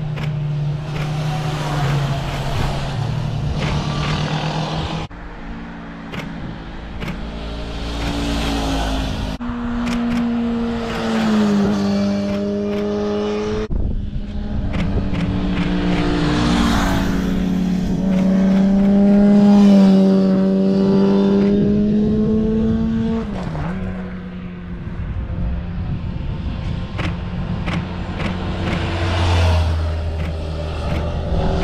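Motorcycles riding past one after another, their engine notes rising and falling with throttle and gear changes. The sound switches abruptly from one bike to the next several times.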